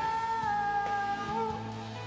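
Live worship band music with one long held high note that sinks slightly and fades about a second and a half in, over a steady low backing.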